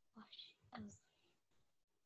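Near silence with a few faint, soft bits of a child's voice in the first second, partly whispered, as she works through the next word of the passage.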